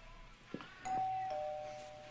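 Two-tone doorbell chime: a higher note, then a lower note about half a second later, both ringing on and slowly fading. A short click comes just before it.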